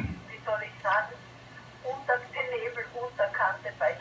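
A voice talking over an amateur FM radio's loudspeaker, thin and narrow like a telephone line, with a steady low hum underneath.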